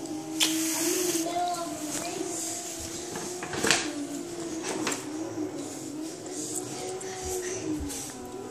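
Tissue paper rustling and crinkling as it is pulled out of a paper gift bag, with sharper crackles just after the start and again about halfway through.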